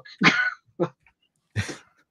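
Three short vocal bursts from a person, not words, heard over a video-call line: a pitched one about a quarter second in, a brief one just after, and a breathy one near the end.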